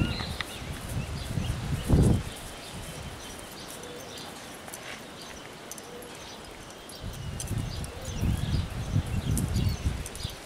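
Small birds chirping in outdoor ambience. Irregular low thumps and rumbles come in the first two seconds, loudest about two seconds in, and again over the last three seconds.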